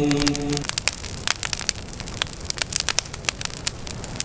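Wood fire crackling, with many irregular sharp pops and snaps over a soft hiss. A held chanted note fades out in the first half-second.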